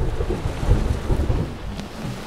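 A long rumble of thunder over steady rain. It builds from the start, is loudest about two-thirds of a second in, and fades toward the end.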